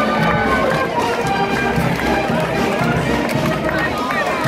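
Street wind band playing a march, clarinets among the instruments, over a regular low beat, with crowd chatter around it.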